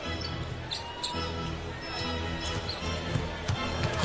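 A basketball being dribbled on a hardwood court, a few sharp bounces, over steady arena music in a large hall.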